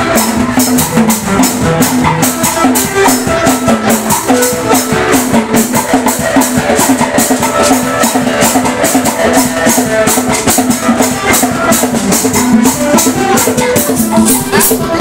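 Live band music: hand drums and a shaker keep a fast, steady beat over held keyboard notes.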